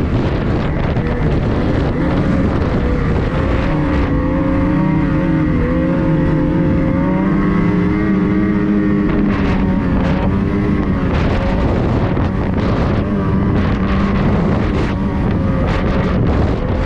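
Ski-Doo snowmobile engine running under steady throttle at speed, its pitch wavering a little, with wind on the microphone. From about nine seconds in, short knocks and rattles cut through the engine sound.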